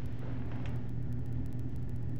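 A steady low hum with faint background noise, with no voice in it.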